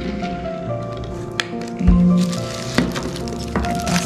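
Background music with steady held tones, over a few sharp clicks and a soft thud from clear plastic turntable parts and their plastic wrapping being handled.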